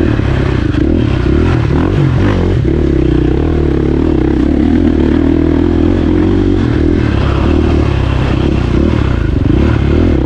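KTM dirt bike engine running under load while being ridden, its pitch mostly steady with brief rises and dips as the throttle is worked.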